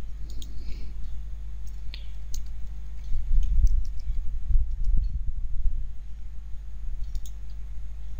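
Computer keyboard keystrokes and mouse clicks as a password is typed in, scattered and irregular, over a steady low hum. A few dull low thumps come about halfway through.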